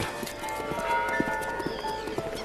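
Film soundtrack music with long held notes over a run of light, irregular knocks.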